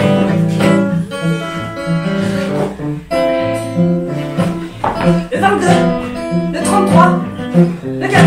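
Acoustic guitar strummed in chords, the chords changing every second or so.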